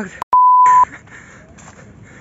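A single steady electronic beep at about 1 kHz, half a second long, switching on and off abruptly just after a click and a brief cut to silence: a censor bleep edited in over a spoken word.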